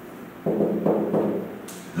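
Marker strokes and taps on a whiteboard as a word is written, in a few short bursts starting about half a second in.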